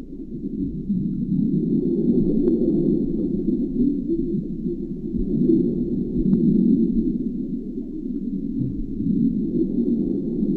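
Muffled underwater ambience: a dense, low, churning rumble with a faint steady high whine above it, and two small clicks about two and a half and six seconds in.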